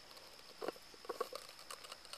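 A few short, soft clicks and taps from a hand handling a black cylindrical container close to the microphone, once about two-thirds of a second in and a quick cluster around a second in.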